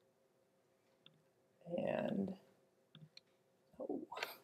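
A few faint laptop clicks from the presenter's computer, with a short burst of a voice about two seconds in and another brief sound just before the end.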